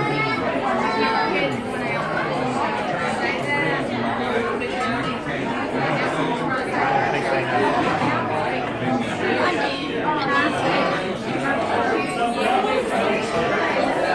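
Many people talking at once around restaurant tables: steady overlapping chatter in a busy dining room.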